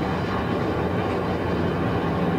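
Sport motorcycle running at freeway speed: steady wind rush over the microphone with a low, even engine drone underneath.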